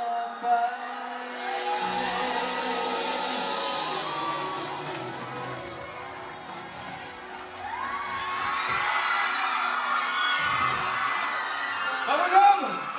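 Live band music in a club, with a bass line coming in about two seconds in, under a crowd of fans cheering and screaming; many high voices rise again in the second half.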